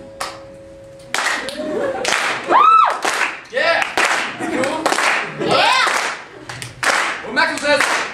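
A last acoustic guitar note hanging for about a second, then an audience breaking into clapping, cheering and whooping at the end of a song.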